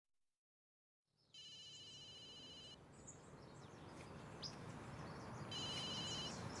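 An electronic telephone ringer trilling twice, the first ring about a second and a half long and the second shorter, just before the call is answered. Faint outdoor ambience with a few bird chirps runs under it.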